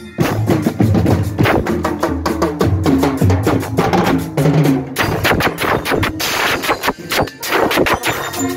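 Marching band playing: rapid snare and bass drumming with cymbals, and brass horns such as trombones and trumpets carrying the tune over the drums.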